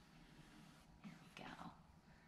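Near silence: room tone, with a softly spoken, almost whispered phrase about a second in.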